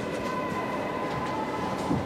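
Steady rumbling background noise of a large hall, with a faint steady high tone running through it and no speech.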